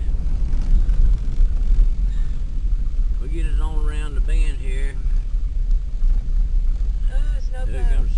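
Steady low rumble of a car's engine and tyres heard from inside the cabin while driving on a snow-covered road.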